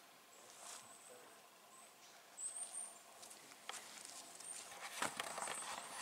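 Faint forest ambience with a short, high bird chirp about two and a half seconds in, then rustling and knocks of a handheld camera being swung round near the end.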